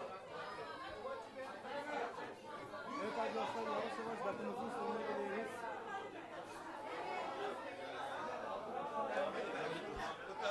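Crowd chatter: many guests talking at once around the tables, a fairly even hubbub of overlapping voices.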